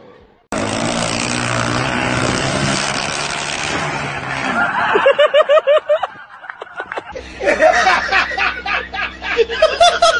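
About four seconds of steady rushing noise with a low hum, then quick rapid bursts of laughter; after a short lull, a man laughing loudly in repeated bursts.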